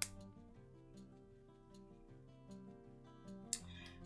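Quiet instrumental background music with a gentle melody. A sharp metallic click right at the start and a few faint ticks later come from metal jump rings and pliers as a ring is closed.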